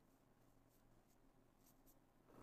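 Near silence: room tone, with a few faint ticks and rustles like an ink brush working on paper.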